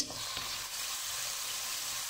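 Diced chicken and onion sizzling steadily in oil in a non-stick frying pan, stirred with a wooden spatula.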